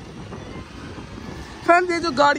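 Street traffic noise from a city bus driving past, a steady hum without distinct events. Near the end a high-pitched voice starts talking, louder than the traffic.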